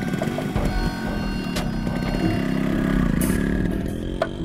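A motor engine running and revving, its pitch shifting early on and its level building to a peak about three seconds in before dropping away near the end.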